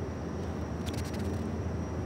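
Steady low hum with a faint hiss of kitchen background noise, with a few faint light clicks about a second in.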